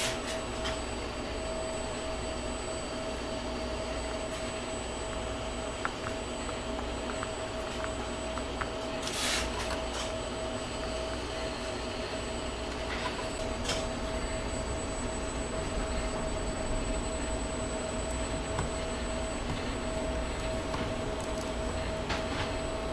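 A steady machine hum with a constant mid-pitched tone, the room's background. Over it come a few faint clicks and scrapes from a hand screwdriver turning tiny Phillips screws into a 3D-printed plastic panel, with one brief louder scrape about nine seconds in.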